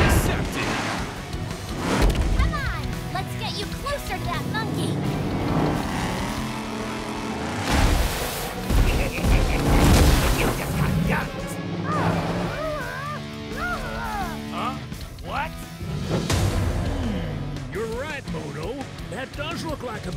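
Cartoon action soundtrack: a music score with several heavy crash and boom impacts laid over it.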